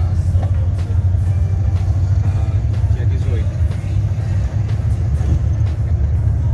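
Volkswagen Kombi van driving in city traffic, heard from inside the cab: a steady, loud low engine and road rumble.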